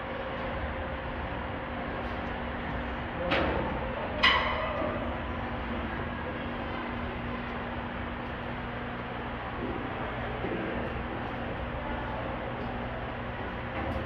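Ambience of a large indoor hall: a steady low hum and hiss, with two brief distant cries about three and four seconds in.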